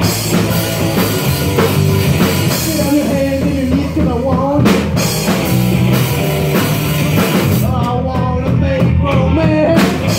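Rock band playing a song live: electric guitars over a drum kit, with cymbal crashes about five seconds in and again near the end.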